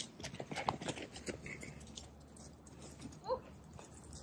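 A dog moving about close by: a quick run of soft clicks and scuffs in the first second and a half, then quieter.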